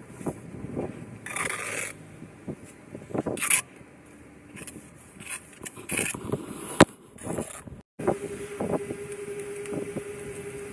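Bricklaying work sounds: a steel trowel scraping mortar and bricks knocking into place, in irregular bursts. There is one sharp click about two-thirds through, then a brief dropout, after which a steady tone hums under further scrapes.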